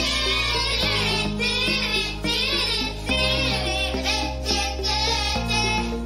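Children singing a song over a musical backing, with sustained low accompaniment notes that change every two seconds or so.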